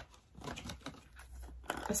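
Faint rustling and crinkling of cosmetic packaging being handled and unwrapped, with a couple of light clicks.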